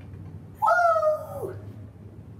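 A woman's high-pitched cheering "woo!", held for nearly a second and dropping in pitch at the end.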